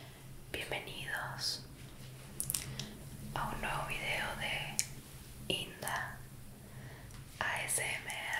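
Soft whispering in several short spells with pauses between them, over a steady low hum.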